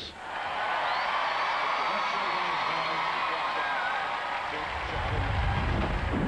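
Studio audience applauding and cheering, with a few whistles over the clapping. Near the end a deep rumbling transition sound effect swells in under it.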